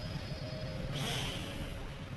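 Town street background: a steady low rumble of road traffic, with a brief hiss about a second in.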